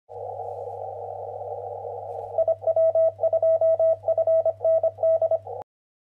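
Morse code heard on a radio: narrow, filtered hiss and a low hum, then, about two seconds in, a single mid-pitched tone keyed on and off in dots and dashes. It cuts off suddenly near the end.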